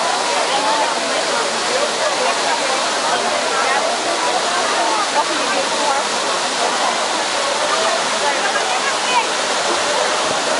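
Water of the Trevi Fountain cascading over its rock-work into the basin, a steady rush, under the babble of many voices in a crowd.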